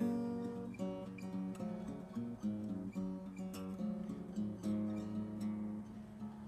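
Acoustic guitar played solo, picked chords ringing out, with a new chord struck about every three-quarters of a second.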